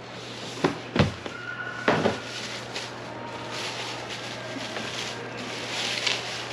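Cardboard shoeboxes handled on a shop counter: three knocks in the first two seconds, then rustling of the wrapping as a box is opened and a sneaker lifted out.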